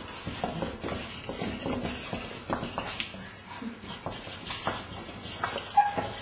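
Felt-tip markers scratching and squeaking across paper in quick, irregular strokes, with light ticks as the tips hit and lift, and a short squeak near the end.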